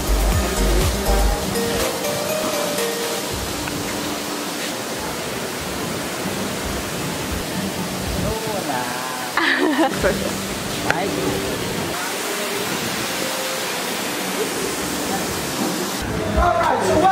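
Soft background music over a steady rushing noise, with a voice heard briefly about nine seconds in.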